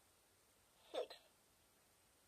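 Children's learning tablet toy's recorded voice calling out a number, one short falling syllable about a second in, set off by a press on its number button.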